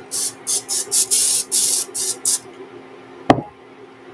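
Cooking-oil spray can misting oil into an empty skillet in a quick series of about six short hissing sprays, one of them longer. A single sharp knock follows as the can is set down on the countertop.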